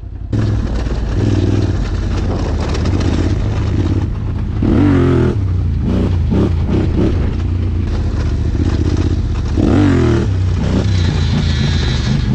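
Yamaha Raptor quad's single-cylinder engine revving under throttle as the quad is ridden on its rear wheels in a wheelie. The revs climb briefly about five seconds in and again about ten seconds in.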